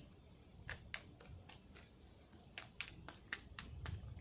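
Tarot cards being handled and shuffled: soft, irregular clicks and snaps of the cards, about a dozen over a few seconds, over a faint low rumble.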